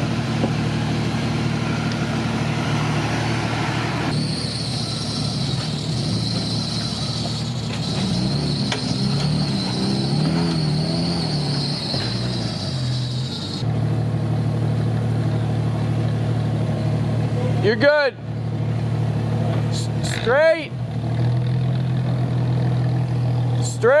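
Off-road trucks' engines running at low revs while crawling over rock, a steady engine hum, with three short squeals in the last few seconds.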